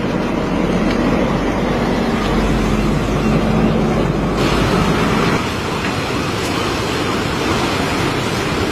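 Steady rushing of surf with wind buffeting the microphone; the hiss changes character about halfway through.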